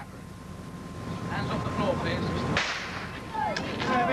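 Crowd murmuring at a race start, then a single starting-pistol shot about two-thirds of the way in, followed by shouts.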